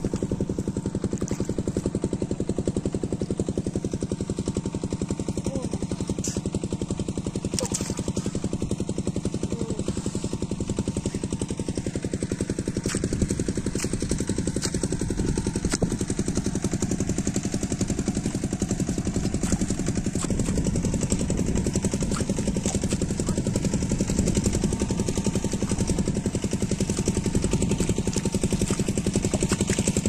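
A small engine running steadily at an even speed, its firing an unchanging rapid pulse.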